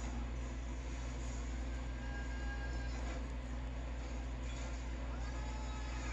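Steady low hum of a running ceiling fan, with a faint television soundtrack underneath.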